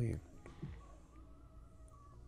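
A man finishes a spoken word, then a pause of near-quiet room tone with only a faint low background.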